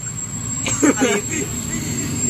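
Steady low rumble of road traffic, with a short burst of voices about a second in.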